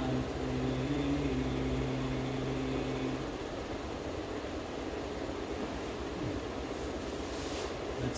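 A man's voice holding a low, steady chanted note, which stops about three seconds in. Steady room noise continues underneath.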